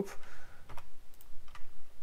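Typing on a computer keyboard: a few separate, irregular keystrokes.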